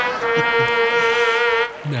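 Game-show 'wrong answer' buzzer sound effect: one long, steady, buzzing tone that cuts off near the end, marking the answer as rejected.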